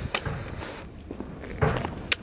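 Footsteps of a person walking on a gritty concrete track, a few short scuffing steps.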